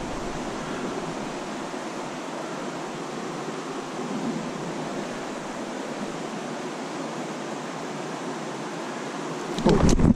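Steady, even rush of flowing stream water. Near the end a low rumble and a few sharp clicks come in as the camera is moved.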